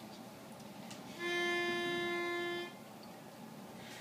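A pitch pipe sounding one steady note for about a second and a half, starting a little over a second in: the starting pitch given before an a cappella carol.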